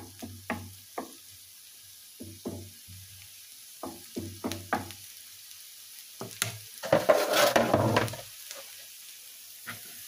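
Wooden spatula stirring and scraping chopped onions and garlic in a frying pan, over a soft sizzle of the frying. A louder second-long burst of handling noise comes about seven seconds in.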